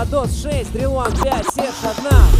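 Hip hop track with rapped vocals over a steady bass line, briefly dropping out near the end.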